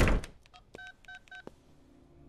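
A wooden door shutting with a loud thud, followed about a second later by three short electronic beeps, evenly spaced.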